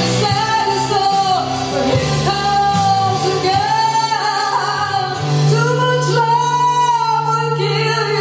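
A woman singing into a microphone, holding long, slightly wavering notes over a steady low instrumental accompaniment.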